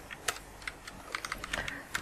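Computer keyboard keys being pressed, a quick string of separate clicks, about seven keystrokes: keyboard shortcuts such as Ctrl + Right arrow used to move around a spreadsheet.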